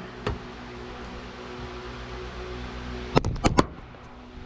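Electric fan running steadily in a small room. A single light click comes about a quarter second in, then a quick cluster of sharp knocks and clatter a little after three seconds, as the camera is fumbled and nearly dropped.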